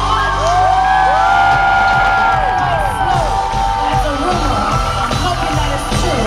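Live pop concert music recorded from the audience: a band with long, overlapping held vocal notes that rise and fall, with the crowd cheering and whooping over it; a steady beat comes back in about four seconds in.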